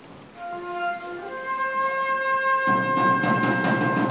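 School concert band starting a concert work: one wind voice sounds a held note, then a higher one, and about two-thirds of the way through the fuller band comes in with low notes and percussion.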